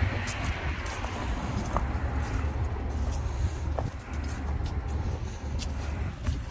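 Outdoor traffic noise, a steady low rumble and hiss of cars on the road, with scattered short clicks and scuffs of someone walking.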